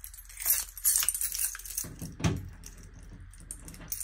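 A bunch of keys on a ring jangling and clinking in hand, with a single dull knock about two seconds in.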